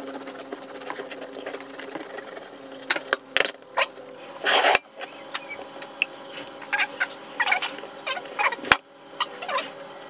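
Hands preparing raw fish: a knife slicing a fillet on a wooden chopping board, then wet handling of the fish in a glass bowl of egg wash. Scattered clicks and knocks, with the loudest noisy scrape or rustle about halfway through, over a steady low hum.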